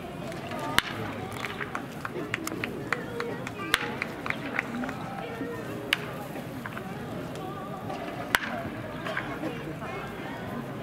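Baseball practice at a ballpark: a bed of distant voices with scattered sharp cracks of balls and bats, the four loudest about a second, four, six and eight seconds in.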